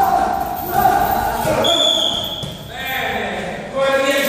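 Gloved punches landing on heavy punching bags, with voices in the room. A short high beep sounds about halfway through.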